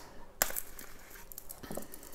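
Stainless steel watch bracelet clinking as the watch is worked off its cushion: one sharp metallic click about half a second in, then a few lighter clicks.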